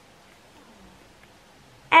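A pause with only faint room tone, then near the end a woman's voice loudly calls out "Air" with a falling pitch.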